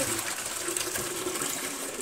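Water pouring steadily out of a glass jar packed with cucumbers into a plastic measuring pitcher, splashing as it fills.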